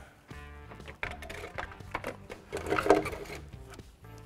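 Plastic radiator fan shroud scraping and knocking against the radiator and hoses as it is lowered into place, loudest about three seconds in, over background music with steady held notes.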